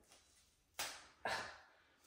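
Adhesive overpatch being peeled off the skin of the upper arm: two short ripping swishes about half a second apart, starting a little under a second in.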